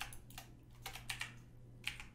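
Computer keyboard keys being pressed several times at uneven intervals, soft scattered clicks of hotkeys while working in 3D modeling software.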